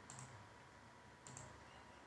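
Near silence with two faint clicks of a computer mouse, a little over a second apart.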